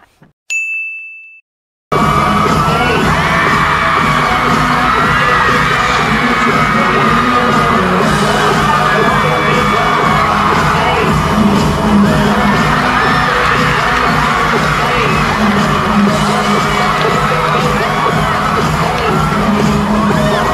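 A short ding sound effect, then a brief silence, and from about two seconds in live concert audio: pop music from the stage under a crowd of fans screaming and cheering.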